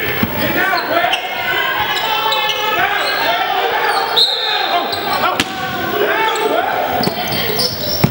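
Basketball game in a gym: voices of players and spectators calling out, with a ball bouncing on the hardwood floor in a few sharp knocks, all echoing in the large hall.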